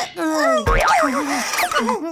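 Cartoon sound effects: a springy boing with a low thud about two-thirds of a second in, and a quick rising sweep later, under dazed, groaning gibberish voices of the cartoon characters.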